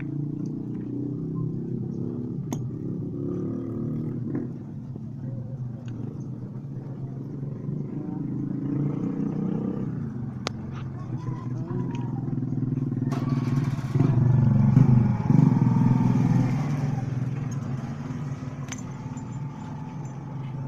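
A motorcycle engine running steadily, growing louder for a few seconds in the second half, with a few single sharp clicks.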